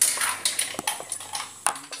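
Several light knocks and clatters of cookware being handled, such as an aluminium pot and its lid, with a sharper knock near the start and another near the end.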